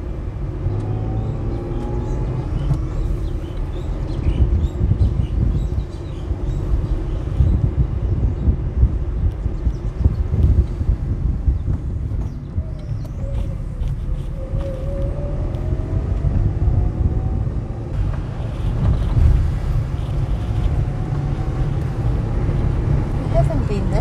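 Car driving along a town road: a steady low rumble of road and wind noise, with a faint engine tone that rises in pitch about halfway through as the car speeds up.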